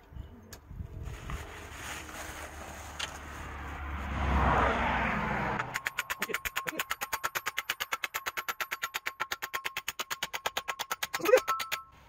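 A hammer striking a metal pole to drive it into the ground. A rushing noise builds and cuts off sharply, and after it comes a fast, even run of knocks, about eight a second, lasting several seconds.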